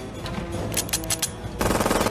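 Film-soundtrack automatic gunfire over background music. A quick rattle of shots comes about three quarters of a second in, then a louder, denser burst near the end.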